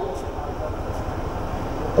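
Steady low background rumble, with no clear pitch or rhythm.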